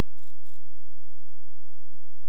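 Steady low drone of a light aircraft's engine and airflow inside the cockpit, heard between radio calls.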